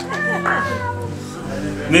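A single high-pitched vocal sound from a person in the room, falling slowly in pitch over about a second, over quiet background music.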